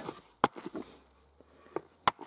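A hammer strikes a lump of white vein quartz once with a sharp crack about half a second in, followed by a few faint clicks of loose chips.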